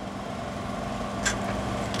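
Pause between spoken phrases, filled with steady low outdoor background rumble and a faint steady hum, with one brief soft hiss about a second and a quarter in.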